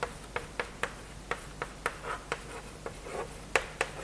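Chalk writing on a blackboard: a quick run of sharp taps and short scratches, about three a second, the loudest a little past three and a half seconds in.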